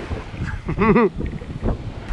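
Wind buffeting the microphone over small waves breaking and washing up a sandy beach, with a short laugh a little under a second in.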